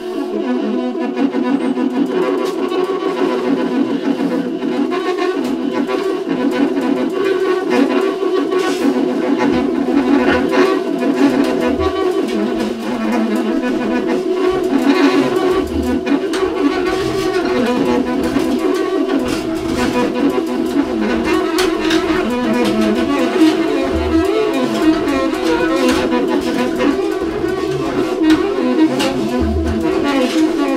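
Free-improvised jazz trio: baritone and alto saxophones holding long, sustained tones together over a drum kit played with scattered cymbal strokes and a few low bass-drum hits.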